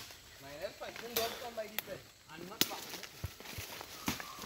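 Several sharp snaps and cracks of twigs and brush as someone pushes quickly through forest undergrowth, with faint distant calling in the background.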